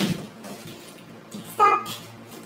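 A brief burst of noise at the start over a faint steady hiss, then one short vocal sound from a person about one and a half seconds in.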